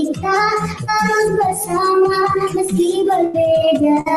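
A child singing a song with long held notes over backing music with a drum beat.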